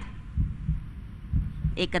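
A low heartbeat-style suspense sound effect, thumping in pairs about once a second under a contest-result announcement. A woman's voice starts speaking at the very end.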